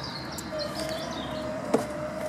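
Caravan entrance-door latch clicking once near the end as the door is opened, over outdoor background noise with a faint steady hum.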